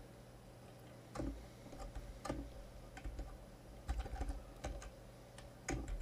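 Computer keyboard being typed on: irregular single keystrokes and short runs of key clicks, with pauses between them.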